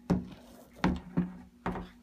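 A round doorknob and a door being handled as the door is opened: four or five short clicks and knocks spread over two seconds.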